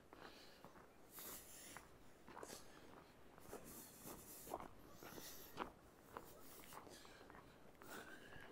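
Faint footsteps crunching in snow, a short scratchy crunch about once or twice a second.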